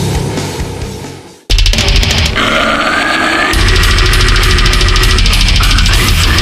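Deathcore metal music: one track fades out to a brief gap, then about a second and a half in another starts suddenly with rapid, evenly repeated drum hits, and a heavy low end comes in about two seconds later.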